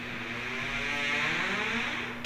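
A passing vehicle: a rushing noise that swells to a peak about a second in and then eases.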